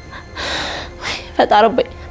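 A woman's breathy gasp lasting under a second, followed by her speech in a distressed voice.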